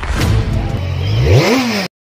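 Channel logo intro sound effect: a motor revving, its pitch rising and then falling about one and a half seconds in, over music. It cuts off suddenly just before the end.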